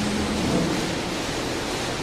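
Laguna CNC router running: a steady, noisy hiss with a low hum under it that fades out about half a second in.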